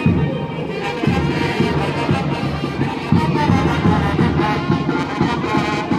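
Brass band playing a lively tune over a steady bass beat of about two strokes a second, with trumpets and trombones carrying the melody.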